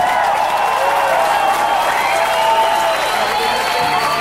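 Concert crowd applauding and cheering loudly at the end of a song, with many voices shouting over the clapping.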